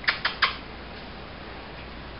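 Three short, sharp clicks in quick succession in the first half second, followed by a steady low hum.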